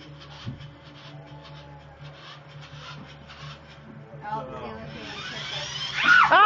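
Small toy RC car's electric motor and gears whirring as it drives across carpet, with the noise growing near the end as it reaches its target.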